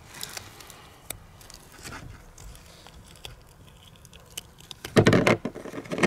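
Fingers prying a recovered bullet out of a block of clear ballistic gel: faint scattered clicks, taps and soft handling sounds, with a louder thump or rustle about five seconds in.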